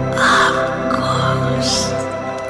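Slow meditation music with long held tones, over which a crow caws a few times with harsh calls: one just after the start and another near the end.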